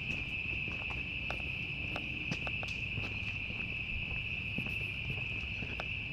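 A chorus of cicadas singing: one steady, high-pitched buzz that holds without a break.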